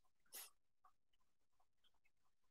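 Near silence, with one faint, brief noise about a third of a second in.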